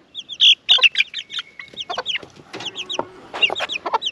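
Young chickens peeping: a rapid run of short, high, falling cheeps.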